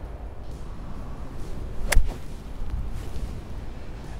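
A full-toe wedge striking a golf ball once, about two seconds in, on a flop shot: a single sharp click.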